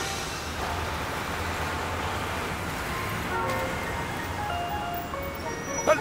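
Steady hum of a cartoon car driving, under soft background music with a few scattered notes.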